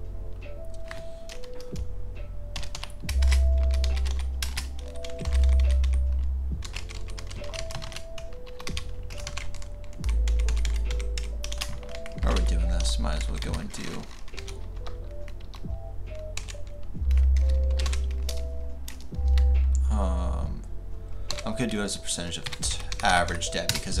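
Computer keyboard being typed on, a quick run of key clicks, over background music with a deep bass line.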